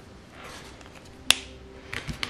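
Marker stroking softly on paper, then a single sharp click a little over a second in, the marker being capped, followed by a few light knocks near the end.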